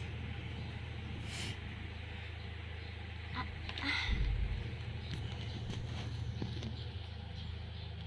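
A steady low hum under a faint, even background hiss, with a short soft noise about four seconds in.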